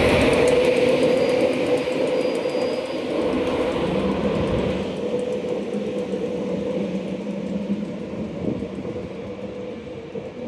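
LNER InterCity 225 train of Mark 4 coaches rolling slowly along the platform: a steady electric hum over the rumble of the coaches, fading steadily, with a second, lower hum for a few seconds midway.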